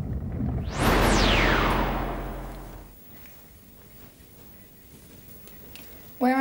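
Synthesised whoosh sound effect over a deep rumble: a sweep that rises sharply in pitch and then falls away over about a second and a half, with the rumble fading out by about three seconds in.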